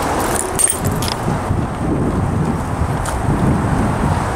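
Steady outdoor rumble, with a few light clicks and rustles in the first second.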